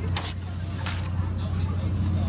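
Steady low hum and background chatter of a crowded room, with a short rustling whoosh just after the start as a drawing board covered in plastic sheeting is swung round.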